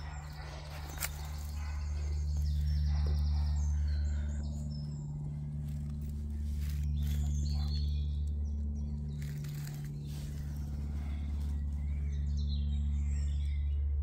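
Woodland birds singing and chirping here and there, over a strong low rumble on the microphone that swells and fades every few seconds.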